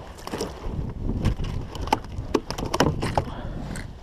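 Irregular clicks and knocks from handling a landing net with a freshly caught flounder on a kayak, over a low rumble of wind and water noise.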